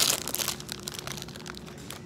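Plastic snack packaging crinkling as hands handle the freshly opened bag, loudest in the first half second, then scattered crackles.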